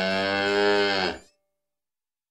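A cow mooing: one long moo that cuts off about a second in.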